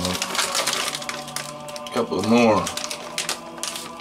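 Plastic pepperoni package crinkling as it is handled and opened by hand, with a man's short vocal sound about halfway through, rising then falling in pitch.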